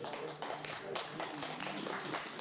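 Scattered clapping from a small audience at the end of a guitar song, with a few faint voices.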